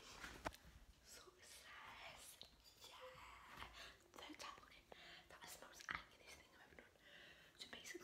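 A woman whispering faintly close to the microphone, with a couple of small clicks.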